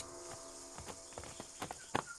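A horse's hooves clip-clopping at a walk on a dirt track, faint and uneven.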